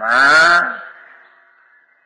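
A man's voice drawing out one breathy syllable with a wavering pitch for nearly a second. It fades into a short pause with only a faint steady whine and hiss from the old recording.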